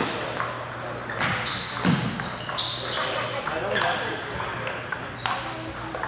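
Background chatter in a table tennis hall, with scattered sharp clicks of ping-pong balls striking paddles and tables.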